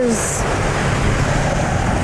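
Steady rushing wind noise on the microphone, heavy in the low end, with the tail of a man's voice fading out right at the start.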